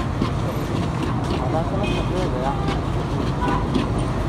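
Busy street noise: a steady traffic rumble with indistinct voices of people talking around it, and a brief high tone about halfway through.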